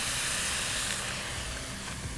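Shrimp and shishito peppers sizzling and hissing in a hot frying pan as soy sauce is poured in, easing off slightly.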